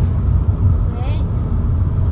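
Steady low rumble of a moving car heard from inside the cabin: road and engine noise while driving, with a short faint voice about a second in.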